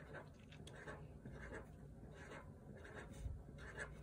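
Faint, short strokes of a felt-tip marker on paper as six small circles are drawn, one after another.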